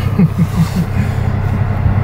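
Nissan 350Z's 3.5-litre V6 idling, a steady low drone heard from inside the cabin. A short low laugh, four quick falling beats, comes in the first second.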